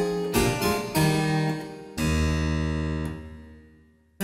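Roland C30 digital harpsichord, French harpsichord sample, playing a few quick plucked notes, then a low final chord about halfway through. The chord is held and dies away to near silence: the close of one of the short preludes or fugues.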